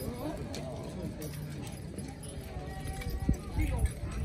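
A team of draft horses stepping hard on a dirt track as they pull a weighted sled, with dull hoof thuds that come heavier near the end, under people talking.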